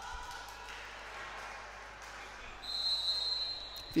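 Volleyball referee's whistle: one long steady blast of about a second and a half, starting near three seconds in, that authorises the serve and starts play.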